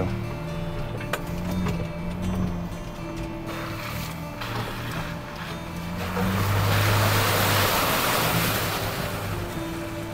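Ford Bronco Raptor driving through a flooded dirt trail, heard from inside the cab: the engine runs low under a rush of water splashing against the tyres and body, which builds and is loudest about six to nine seconds in, then eases.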